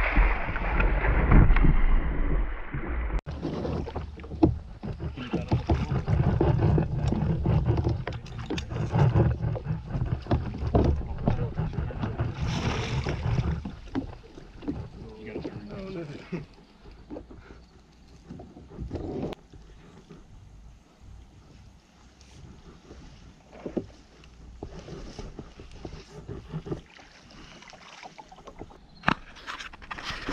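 Water splashing hard as a hooked alligator gar thrashes at the surface beside a kayak, loudest in the first three seconds and cut off abruptly. Irregular splashing and knocks go on for about ten more seconds, then only quieter water sounds with scattered clicks.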